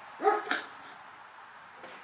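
A dog barks briefly, a short double bark near the start, the first part pitched and the second harsher.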